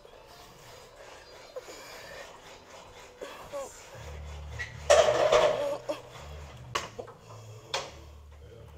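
A metal weight bar clinking during a seated twisting exercise, with a loud strained exhale about five seconds in and sharp clicks near the end. The bass of faint background music runs under it.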